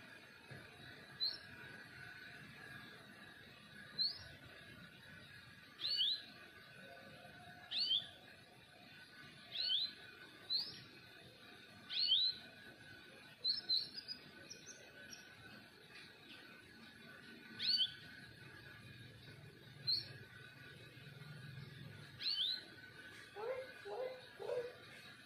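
Canary calling: about a dozen short, high chirps, single or in quick pairs, each dropping slightly in pitch, coming every two seconds or so.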